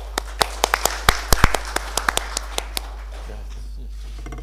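Brief, scattered applause from a small audience: a loose run of sharp claps that thins out and stops about three seconds in.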